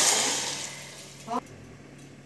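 Water poured from a jug into a metal pot of browned meat chunks, splashing loudly and then tailing off within the first second or so as the pour ends.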